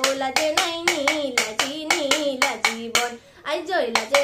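A girl singing a Bihu song, accompanied by rapid, even clacks of a split-bamboo toka clapper struck in time. Both the voice and the clacks break off briefly about three seconds in, then resume.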